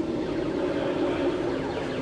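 A steady electronic hum of held low tones, with faint sweeping bleeps above it, from retro arcade game cabinets.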